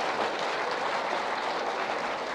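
Rapid mechanical clatter of office typing machines, many fine key and type-bar clicks running together into a steady rattle.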